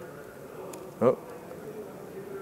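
Laptop keyboard typing, a few faint key clicks, over a steady low electrical hum. A short spoken "oh" comes about a second in.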